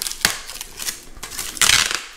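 Protective plastic film being peeled off a corrugated metal garden-bed panel, crackling with a few sharp snaps, the film stuck on tight. A louder stretch of crackling comes near the end.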